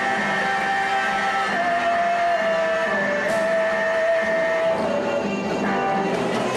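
Amateur rock band playing live through a small guitar amp: electric guitars over drums, with one long held note that shifts pitch a couple of times and ends near the end.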